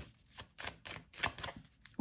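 Tarot cards being handled on a table: a handful of short, soft clicks and taps as cards are picked up and set down.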